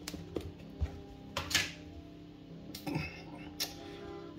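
Plastic lid of an ice-cream tub being pried off and handled: a few sharp clicks and knocks, with a louder plastic crackle about one and a half seconds in, over steady background music.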